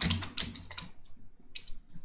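Computer keyboard keystrokes: a quick run of key clicks in the first second, then a pause and another click near the end.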